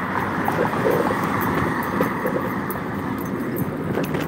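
Steady rolling rumble of a dog-drawn rig's wheels on pavement, mixed with wind on the microphone as the husky team pulls it along, with a few faint ticks.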